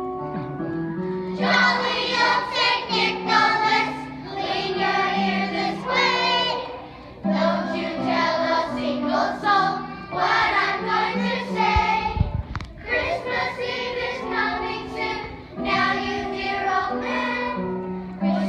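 Children's choir singing in unison with instrumental accompaniment holding steady low notes. There is a brief low thump about two-thirds of the way through.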